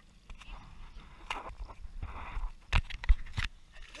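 Choppy water slapping against the side of an inflatable boat, with a short wash of splashing and several sharp knocks against the hull, over a low rumble.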